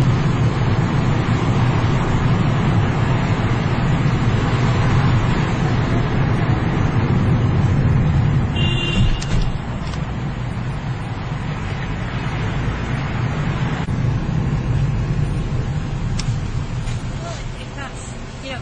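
Steady car-interior noise from the engine and tyres while driving in town traffic, a little quieter from about nine seconds in. A brief high tone sounds about nine seconds in.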